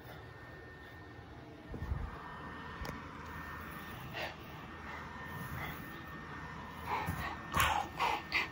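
Quiet handling of small plastic toy soldiers on carpet, with a soft thump about two seconds in. Near the end come a few short breathy vocal noises, a person voicing a toy dinosaur.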